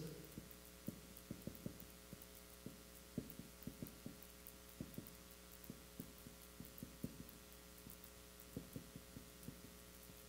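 Faint, irregular taps and strokes of a marker pen writing characters on a whiteboard, over a steady low electrical hum.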